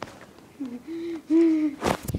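A child's voice making two short wordless vocal sounds, one about half a second in and one about a second and a half in. A loud brief rustle from the phone being handled follows near the end.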